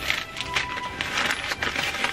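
Plastic snack packaging rustling and crinkling, with a few light knocks, as items are handled and set down.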